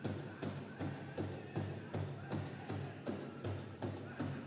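A pow wow drum beaten in a steady, even rhythm of about two and a half strikes a second, as the music of the pow wow plays on.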